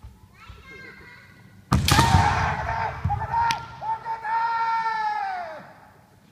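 Kendo exchange: a sharp crack of a bamboo shinai strike and foot stamp on the wooden floor about two seconds in, followed by loud kiai shouts, the last one held for over a second and falling in pitch as it ends. Fainter kiai come before the strike.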